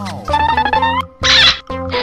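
Upbeat children's background music, with a pitched sound effect that slides down and then up during the first second, and a short, loud noisy burst a little after the middle.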